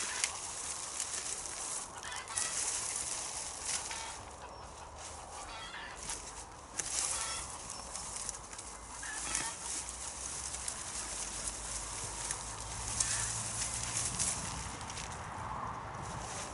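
Annual flower plants being pulled up by hand and gathered: rustling of stems and leaves in repeated bursts.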